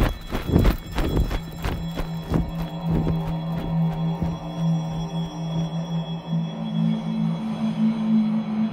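Horror film score: a run of heavy, drum-like hits about three a second that thin out after a few seconds as a low sustained drone takes over, the drone stepping up in pitch near the end.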